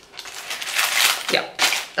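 Clear plastic bags of wax melt bars crinkling as they are handled: a rustling spell in the first second, then another brief one near the end.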